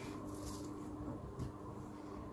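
Quiet room tone with a faint steady hum and a soft tick about one and a half seconds in.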